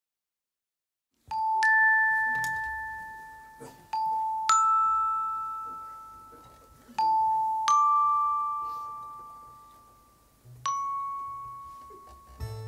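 Slow, bell-like single notes opening a song, played in pairs with the second note higher, each ringing out and fading over a couple of seconds. The notes begin about a second in and end with one last note near the end.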